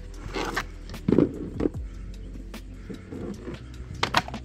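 Thick flexible rubber floor mats being handled and bent, giving a few short rubbery creaks and rubbing sounds over a steady low hum.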